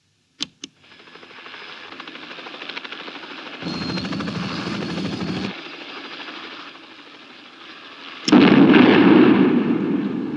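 Two sharp console button clicks, then a helicopter's rotor chop growing louder, and about eight seconds in a loud explosion that dies away slowly: the helicopter being blown up.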